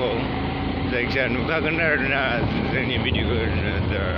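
Motorbike riding along at road speed: a steady low engine hum with wind rushing on the microphone, and a voice talking over it.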